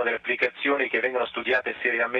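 Speech only: a man talking continuously, heard over a narrow-band audio link that cuts off the high frequencies.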